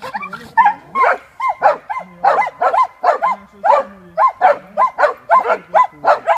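Dachshunds barking hard and fast at a cornered badger, about three shrill barks a second, with low drawn-out growls between the barks.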